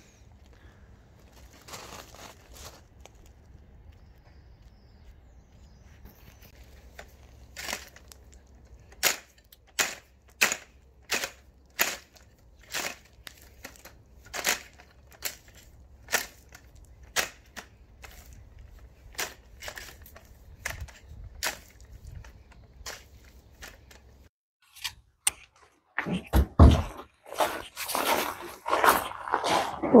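Garden rake being dragged through wet gravel and dead grass, its tines scraping in repeated sharp strokes a little faster than one a second from about eight seconds in. The strokes come louder and closer together near the end.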